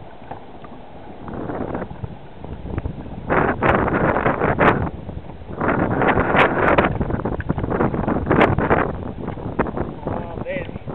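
Wind buffeting the microphone over open water, with water sloshing around a kayak hull; it comes in loud gusty bursts from about three seconds in.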